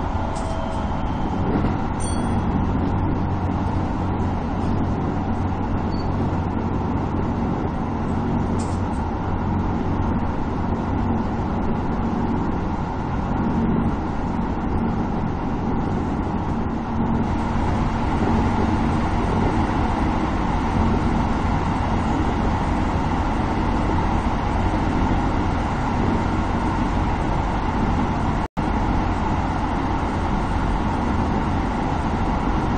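Keisei 3050-series electric train running at speed, heard from the driver's cab: a steady rumble of wheels and traction motors. About halfway through it enters a tunnel and the running noise becomes fuller and slightly louder.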